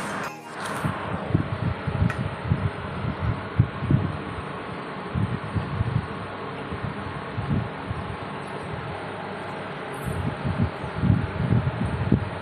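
Steady background hiss with soft, irregular low thumps every second or so, a little denser near the end.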